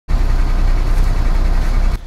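A bus's engine running, heard from inside the bus: a steady, loud low rumble with a broad hiss over it.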